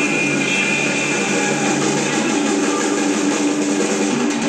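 Live electric blues band playing loud: electric guitar and drums with cymbals, the sound dense and steady with held tones rather than moving notes.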